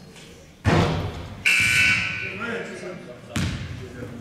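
A basketball hits with a loud thud about half a second in. About a second later a referee's whistle sounds once, a short high blast that stops play. A second ball thud comes near the end, over voices in the gym.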